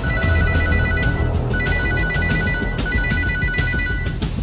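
Phone ringing: an electronic trilling ringtone in three bursts of about a second each, with short gaps between, over background music.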